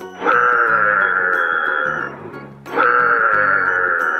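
An animal call, a long drawn-out cry lasting about two seconds, heard twice in identical form, over background music.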